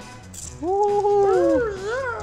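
A drawn-out, wavering pitched vocal sound lasting about a second and a half, starting about half a second in: held level at first, then bending up and down.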